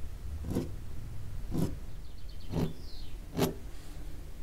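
White pen drawing short strokes on watercolour paper, about one stroke a second, over a steady low hum.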